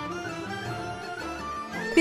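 Instrumental background music: a slow melody of held notes.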